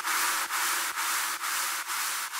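Outro of an electronic progressive house/trance track: a bright synthesized white-noise hiss that pulses, dipping about twice a second in time with the beat, slowly fading down.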